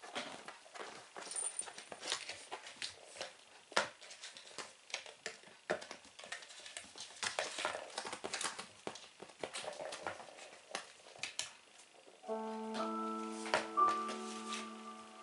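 A kitten playing on a laminate floor: irregular taps, clicks and scrabbles of paws, claws and batted toys. About twelve seconds in, music with long held notes starts.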